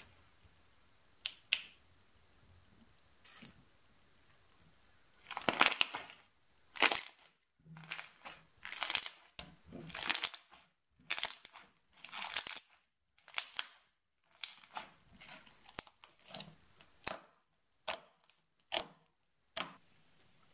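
Crunchy, elastic slime being squeezed and pressed by hand, giving a run of irregular short crackles and squishes from about five seconds in, after a few nearly quiet seconds with a faint click or two.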